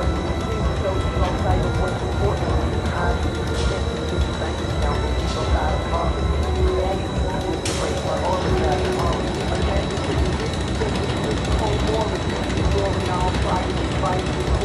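Roller coaster running overhead, with steady wind rumble on the phone's microphone, indistinct voices and a few brief clicks.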